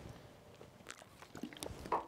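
A brief pause in speech: a quiet room with a few faint, short clicks.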